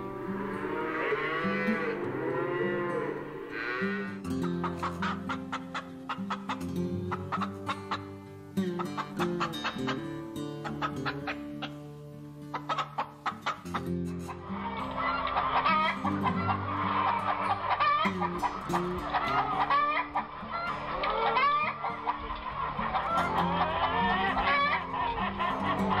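Cattle mooing over light guitar background music; about halfway through this gives way to hens clucking busily.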